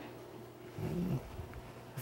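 Quiet room tone in a small hall with a faint steady electrical hum, and a brief low murmur from a man's voice about a second in.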